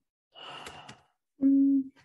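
A woman sighs, a breathy exhale with a couple of faint clicks in it, then gives a short, steady hummed "mm" near the end.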